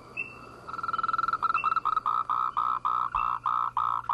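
Frog chorus: a loud, pulsating call repeated about three times a second starts about a second in, over fainter calls of other frogs, including short higher chirps.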